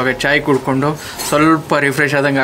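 A man talking steadily to the camera.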